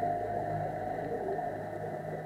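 Slow background music with long, held notes.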